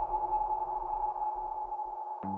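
Intro of a song's backing track: a single sustained synthesizer tone held steady over a low rumble, slowly fading.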